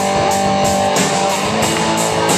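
Live rock band playing an instrumental stretch between sung lines: electric guitars holding chords over a steady beat.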